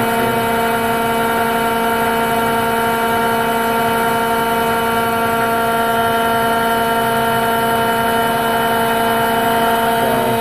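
Hardinge AHC turret lathe running: a loud, steady machine hum made of several constant tones, with no change in pitch or level.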